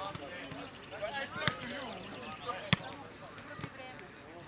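A football being kicked, a sharp thud about once a second, with the loudest kick roughly two-thirds of the way through, among players' voices calling across the pitch.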